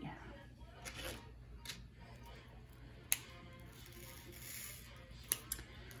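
Faint handling of diamond-painting supplies: a few light, scattered clicks of small resin drills and a plastic tray, the sharpest about three seconds in.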